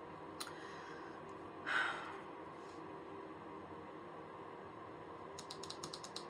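Tarot cards handled on a tabletop: a single light tap about half a second in, a brief soft brushing sound about two seconds in, then a rapid run of light clicks starting near the end.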